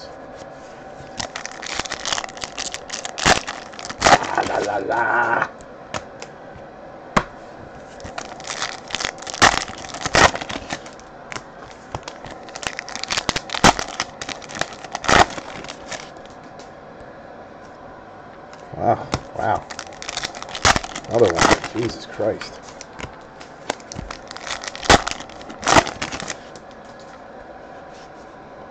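Foil trading-card pack wrappers being torn open and crinkled by hand, in several bursts of sharp crackling separated by quieter stretches of cards being handled.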